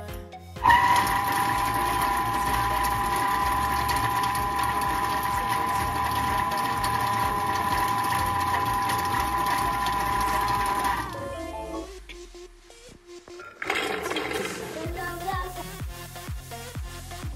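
Thermomix food processor's motor running at speed 5, blending tahini for about ten seconds with a steady whine. It starts about half a second in and spins down after about ten seconds.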